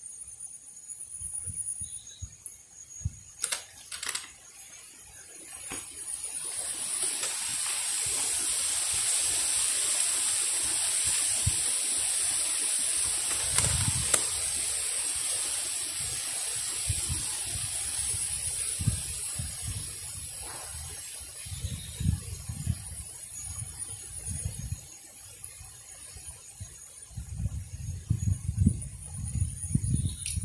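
A rushing hiss swells up about six seconds in, holds for most of the time, and fades over the last few seconds, with low thumps underneath and a faint steady high whine throughout.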